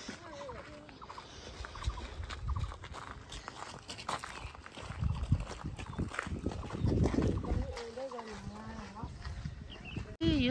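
Faint, indistinct voices talking in the background, with footsteps on a gravel path.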